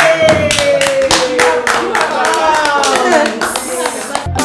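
A small group clapping steadily, many hands at once. One voice holds a single long cheer over it that slides slowly down in pitch.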